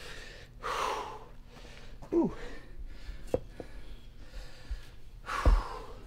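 A man breathing hard after a set of dumbbell shoulder raises: a loud exhale about a second in and another near the end, with a short falling grunt about two seconds in. A sharp click comes midway and a low thump near the end.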